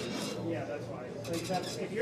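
Quiet male voices talking.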